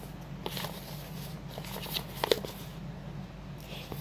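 Paper pattern sheets being handled, with faint rustles and a few light clicks scattered through, over a steady low hum.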